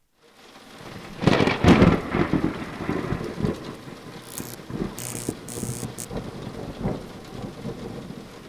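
Rain falling steadily, with a rumble of thunder loudest about one to two seconds in. The sound fades in from silence at the start.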